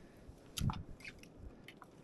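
Quiet handling noises of a caught walleye being dealt with on the boat deck: a few faint light clicks and one short muffled thump about two-thirds of a second in.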